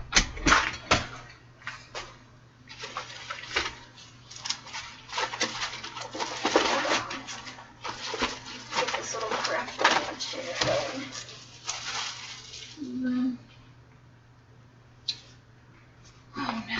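Someone rummaging through craft supplies: irregular rustling with knocks and clatters as things are moved about, busiest in the middle and dying down near the end.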